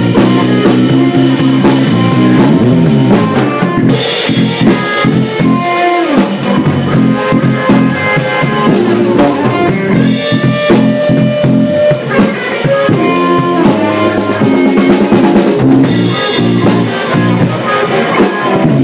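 Live blues trio playing an instrumental passage: a drum kit heard close up with snare and bass drum, electric guitar (a Parker Fly through a Koch Studiotone amp) and electric bass. A cymbal wash swells in about every six seconds.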